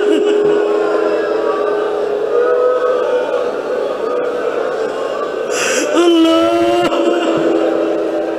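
A man's voice chanting a prayer of supplication in long, drawn-out held notes through a microphone, with a new phrase starting about six seconds in.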